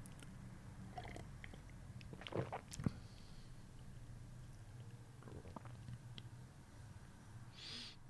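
Faint sounds of a person drinking from a mug: a few soft swallows and small knocks, the two clearest about two and a half seconds in, over quiet room tone with a low steady hum.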